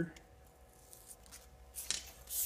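A knife blade drawn along creased sandpaper held against the edge of a block, cutting the strip: faint scratching, then a louder sharp scrape near the end.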